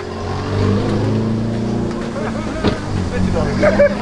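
A car engine running close by, a steady low hum for about the first two seconds that then fades under voices.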